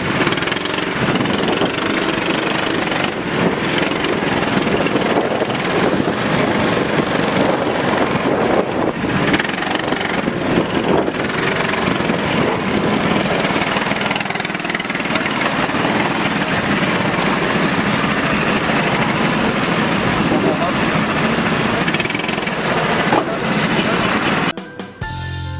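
Car engines running and a crowd of voices together, a continuous loud din with no break.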